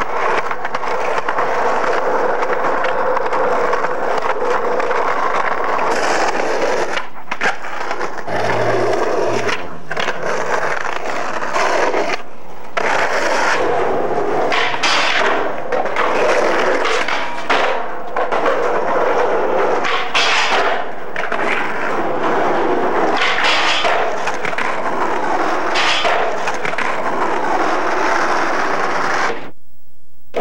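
Skateboard wheels rolling on concrete and pavement, with the cracks and clacks of the board hitting the ground on tricks. The sound drops out briefly several times, and again just before the end.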